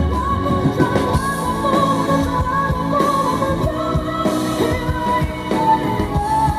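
A female pop vocalist singing live through a microphone, backed by a rock band. A drum kit beats steadily under the wavering sung melody, with electric guitar.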